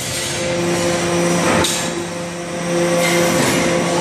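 Hydraulic press running, a steady machine hum with hiss, and one short knock about a second and a half in.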